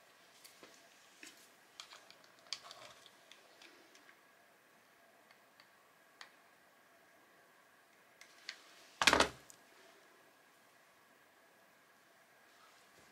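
Small clicks and taps of acrylic gems being handled and set on a canvas, scattered through the first few seconds. One louder, brief burst of handling noise comes about nine seconds in.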